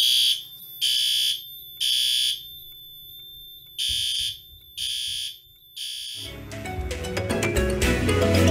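Fire alarm horns sounding the temporal-3 evacuation pattern after a pull station is pulled: three short high-pitched blasts, a pause, then three more. Music comes in near the end.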